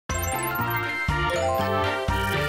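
Short channel-intro music jingle starting abruptly: a run of short high notes in the first second over a bass line that steps from note to note.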